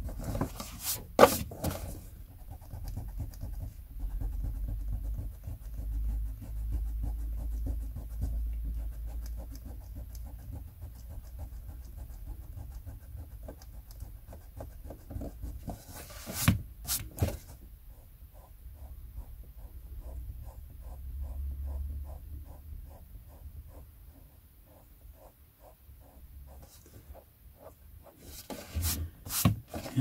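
Rubber eraser scrubbing back and forth on the page of an old paperback to lift pencil writing. In the later part it settles into quick, even strokes about three a second, with a few sharper knocks of paper and book being handled near the start and about halfway through.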